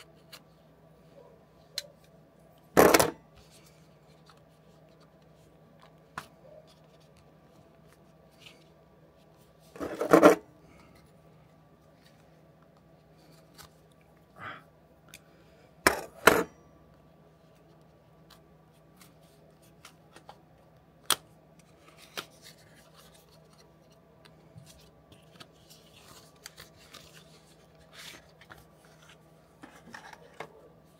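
Hands opening a small cardboard box with a knife: scattered light clicks, taps and rubbing, with a few louder short noises about three, ten and sixteen seconds in. A faint steady hum runs underneath.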